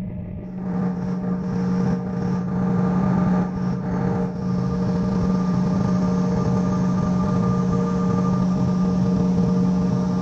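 Jet engines of an Air Canada jet heard from inside the cabin while the aircraft moves on the ground: a steady hum with a whine over it, growing louder over the first three seconds and then holding steady.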